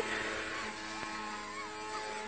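XK K130 RC helicopter's electric motors and rotors whining steadily in flight, with a fainter higher tone wavering up and down as it flies.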